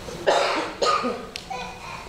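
A person coughing twice in quick succession.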